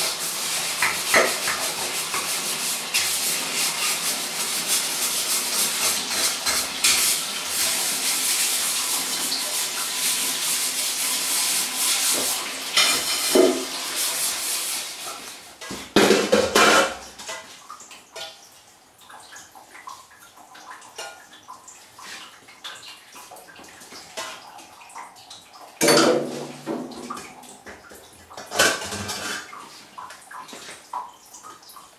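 Water running and splashing as aluminium milk jugs and churns are washed and scrubbed by hand. About halfway through the water stops, and a few loud knocks and clanks of aluminium vessels being handled follow.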